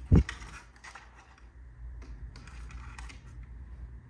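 A dull thump at the very start, then light scratching and clicking as a cat's claws grip a sisal-wrapped post and wooden shelf while it climbs.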